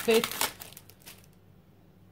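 Brief crinkling of thin craft materials (paper napkin and stamp packet) being handled, dying away about a second in.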